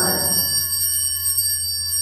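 Altar bells ringing at the elevation of the chalice during Mass: a bright, shimmering set of high bell tones that holds and slowly fades.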